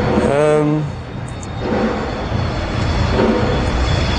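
Steady low rumble of road traffic, with a man's short voiced hum about a third of a second in.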